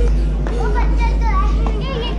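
Children's voices chattering and calling close by, high-pitched and lively, over a steady low hum.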